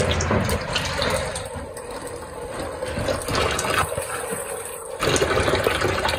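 Water splashing and churning into the wash tub of a twin-tub washing machine as it fills, quieter in the middle and louder again near the end.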